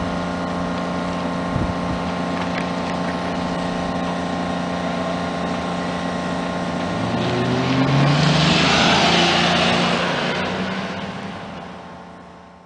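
A car engine running steadily. About seven seconds in, a car accelerates past with a rising engine note; it is loudest around eight to nine seconds in, then fades away.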